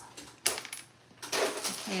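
Small wooden Scrabble letter tiles clicking against each other and the table as they are picked through by hand. One sharp click about a quarter of the way in is the loudest sound.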